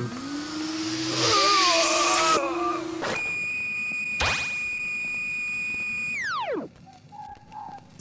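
Electronic sci-fi sound effects. A droning hum with a loud rushing whoosh over it gives way about three seconds in to a steady high synthesized tone, crossed by a quick zap sweep, that slides sharply down in pitch and dies away near the end.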